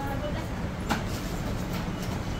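Steady low background rumble with faint voices, and one light clink about a second in as stainless steel bowls are handled.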